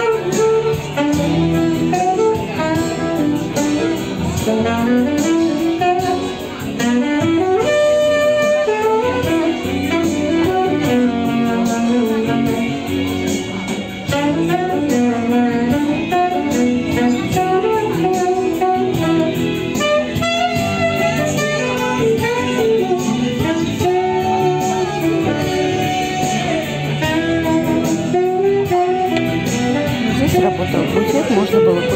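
A saxophone playing a melody over an accompaniment.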